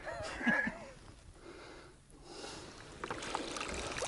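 Shallow stream water splashing and trickling around a soft plastic bottle with a sock stretched over its mouth as a filter, as it is dipped and lifted out; the soft water noise and drips fill the second half.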